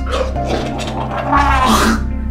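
Background music with a steady bass line. Near the end a man gags loudly, his stomach overfull with carbonated Sprite.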